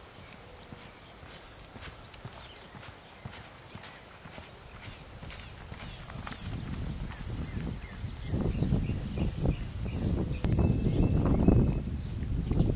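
Hoofbeats of a reining horse, faint at first and growing steadily louder from about halfway through.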